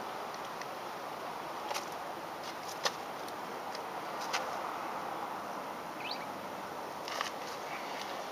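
Steady outdoor background noise with a few scattered sharp clicks and a single short rising chirp about six seconds in.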